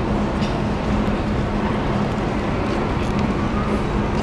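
Steady city background noise, traffic and crowd hubbub, with a constant low hum running under it.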